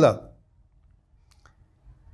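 A man's voice trails off at the end of a sentence, followed by a pause of near silence with a few faint clicks.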